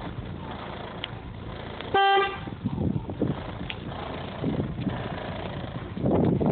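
A vehicle horn gives one short toot about two seconds in, a single steady tone lasting under half a second, over a background of low, uneven rumble and thumps.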